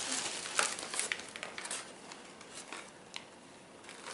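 Foil-lined paper sandwich bags crinkling as they are handled and opened, busiest in the first two seconds, then quieter with a few small ticks.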